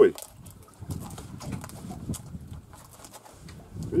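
Low, quiet muttered speech, with a few light clicks scattered through it.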